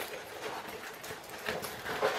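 A plastic-covered diamond painting canvas being rolled backwards by hand: soft rustling and crinkling with a few light taps.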